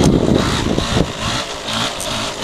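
Yamaha WR200 two-stroke dirt bike engine running under throttle through a slow wheelie. It is louder for about the first second, then quieter and steadier.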